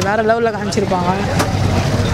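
A young man speaking Tamil into a handheld microphone in short phrases, over a steady low rumble of street traffic.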